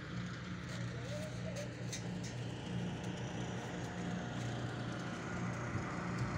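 An engine or motor running steadily with a low, even hum over outdoor background noise, with a few faint clicks about a second and a half in.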